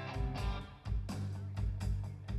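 Live band music: electric bass and guitar playing over a steady drum beat, with a short guitar run and a brief drop in the beat just before a second in.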